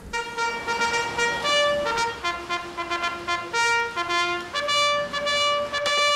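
A simple tune played one note at a time on a buzzy, horn-like instrument, each note held about half a second, the last held for about two seconds.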